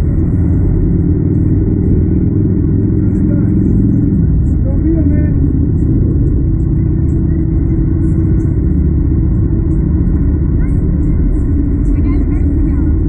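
Wind buffeting the onboard camera's microphone on a moving slingshot ride capsule: a steady, loud low rumble.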